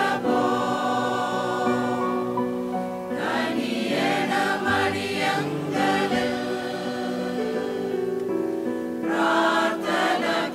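Mixed choir of men and women singing in long held chords that shift every few seconds.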